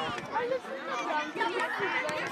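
Many children's voices chattering and calling out at once, high-pitched and overlapping.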